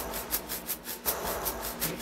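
A recreated studio percussion loop playing back: a steady, even pattern of quick, hissy hits, about six a second.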